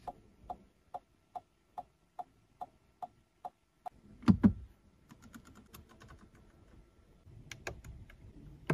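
Clicks and ticks from a Cadillac CT5's cabin controls. A steady run of faint ticks, about two a second, stops about three and a half seconds in. A louder double click follows, then a quick string of faint ticks like a rotary dial being turned, and more button clicks near the end.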